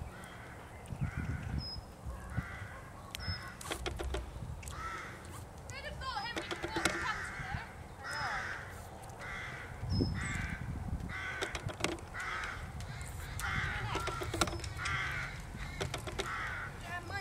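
A cantering horse blowing out in rhythm with its strides, about one and a half breaths a second, steady through the second half. A small bird gives a few short high chirps.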